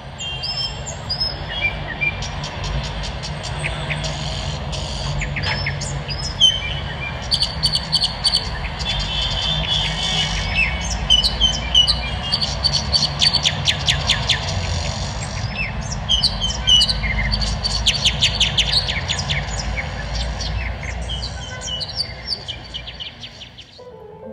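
Recorded birdsong played over outdoor loudspeakers: many short chirps and quick trilled tweets overlapping throughout, with a steady low rumble underneath.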